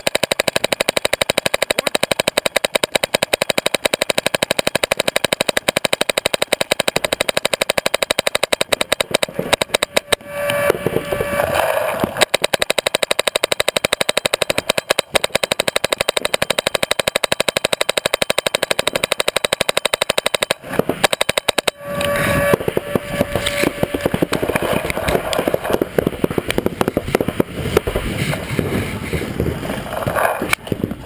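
Paintball markers firing in fast, continuous streams, the shots running together into a steady rattle, with short lulls about ten and twenty-one seconds in.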